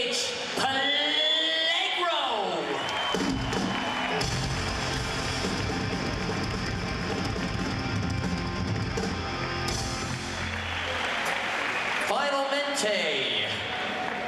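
Live punk rock band playing a short loud burst with electric guitar, bass and drums. A voice on the microphone glides up and down over it at the start and again near the end.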